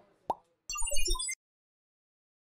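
Logo-animation sound effect: a short pop about a third of a second in, then a quick flurry of short blips at many different pitches over a low rumble, lasting about half a second and cutting off abruptly.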